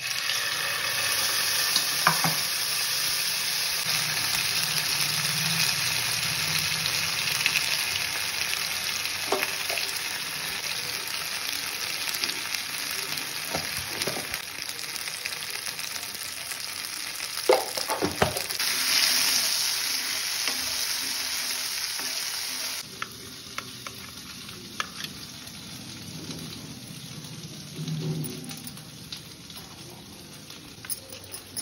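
Paste and then spice powders sizzling in hot oil in a frying pan, a steady hiss with a few sharp clinks of a steel spoon against the pan. About two-thirds of the way through, the sizzling drops to a quieter level.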